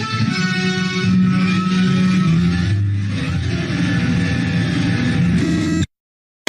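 Instrumental music with guitar, playing steadily and then cutting off abruptly just before the end.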